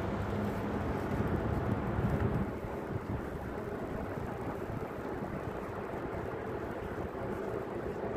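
Street noise with a steady low traffic rumble. The rumble is louder for the first two and a half seconds, then eases to an even background.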